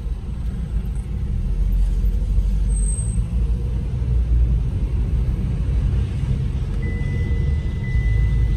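Low, steady road and engine rumble heard from inside a moving car's cabin. A faint, thin high tone comes in near the end.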